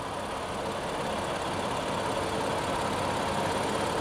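Steady background noise: an even hiss with a faint low hum, growing slightly louder over the few seconds.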